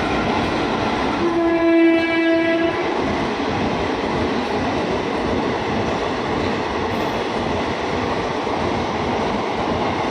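Indian Railways passenger train rolling past on the rails with a steady rumble of coaches. About a second in, the train's horn sounds once for about a second and a half.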